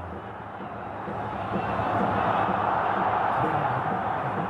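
Stadium crowd at a football match, a broad wordless roar that swells from about a second in and stays loud.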